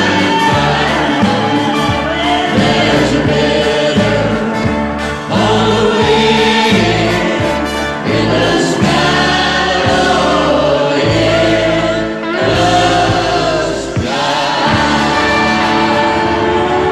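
A live country-gospel group of men's and women's voices singing together into microphones, over a band whose bass steps from note to note underneath.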